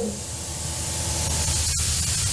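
Steady hissing noise with a low hum beneath it, briefly dropping out once near the end.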